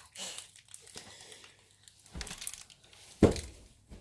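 Food packaging being handled and torn open by hand, crinkling and rustling in short bursts, with one loud thump about three seconds in.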